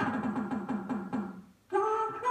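Coin-operated slot machine's electronic sound effects: a fast run of repeated falling blips as the light chases around the symbol ring, slowing and stopping about a second and a half in. After a brief gap, a held electronic tone starts near the end as the light lands on a winning symbol.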